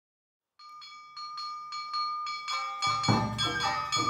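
Awa Odori band music starting about half a second in. A small brass hand gong (kane) is struck in a quick, even rhythm of about five strokes a second, its ringing growing louder. Deep taiko drums join near the end.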